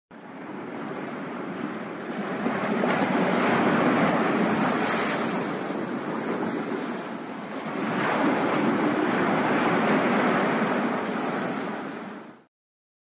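Ocean surf washing and breaking around rocks: a steady rush of water that swells twice, the second surge building about eight seconds in, then fades out at the end.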